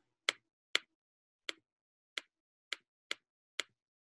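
Seven sharp, separate clicks made at a computer while something is being looked up, unevenly spaced about half a second apart.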